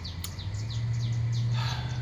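A small bird chirping in a quick steady series, short high notes that each slide downward, about four a second, over a low steady hum that grows louder about half a second in.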